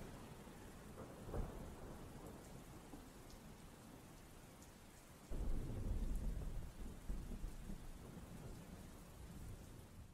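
Steady rain falling, with a brief crack of thunder about a second and a half in. About halfway through, a loud rumble of thunder starts suddenly, runs for a few seconds and then fades.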